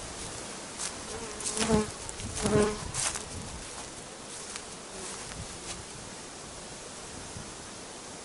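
Honeybees buzzing in flight around their hives on the last cleansing flight of the autumn, with two bees passing close by about one and a half and two and a half seconds in, their buzz swelling and wavering in pitch as they go by.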